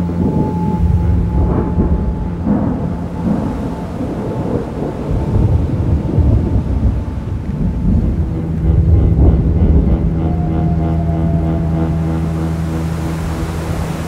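Thunder rumbling in several rolling swells, loudest about nine seconds in, over a steady held low tone of background music.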